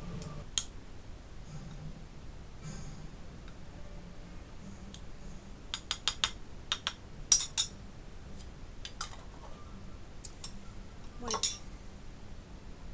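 Metal spoon clinking against a glass jar and ceramic saucer: a few sharp clinks, a quick run of them about halfway through and a louder one near the end.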